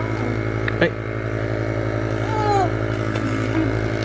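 Electric nebulizer compressor running with a steady hum, used as an air pump to blow air through its tube into an inflatable paddling pool.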